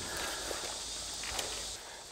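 Steady, high-pitched drone of a summer insect chorus over a low rumble, with a couple of faint clicks; the chorus cuts off near the end.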